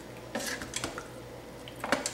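Wooden spatula stirring cooked beans and browned ground beef in a stainless steel Instant Pot inner pot: soft, wet squishing with a few scrapes and knocks against the pot wall, the sharpest just before the end.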